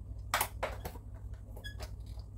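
A few light clicks and taps of kitchen utensils and containers being handled, one with a short ring near the end, over a steady low hum.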